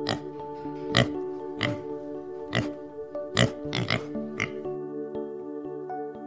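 Pigs oinking: about seven short, sharp calls in the first four and a half seconds, then none, over steady background music.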